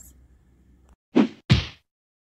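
Two quick whoosh-and-whack sound effects about a third of a second apart, a little over a second in, the second louder with a deep thud: an animated logo sting.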